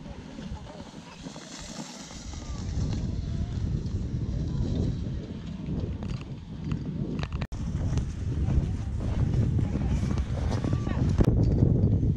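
Wind buffeting the camera microphone, a low rumble that grows louder, with faint voices in the background.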